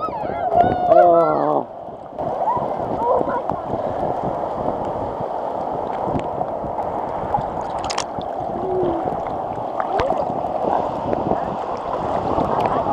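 Ocean waves washing and churning around a camera at the water's surface, a steady rushing of water with scattered small splashes. A person's voice calls out in the first second and a half.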